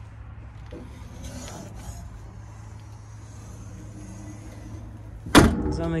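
The engine compartment cover of a Hamm DV+ 70i tandem roller being shut, a single loud bang about five seconds in, over a low steady hum and some faint handling noise.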